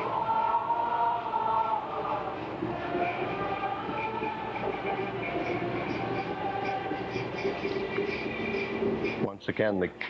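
Choir singing Latin Gregorian chant in a requiem mass, with long held notes that shift slowly in pitch. A man's voice starts speaking near the end.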